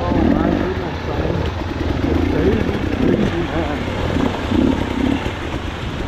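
Off-road dirt bike engines running at low speed on a rocky trail, the pitch rising and falling as the throttle is opened and closed over the rocks.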